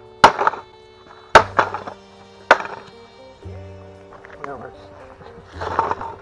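Three hard hammer blows on the plastic and metal casing of a white Apple Mac computer, about a second apart, over background music with sustained tones.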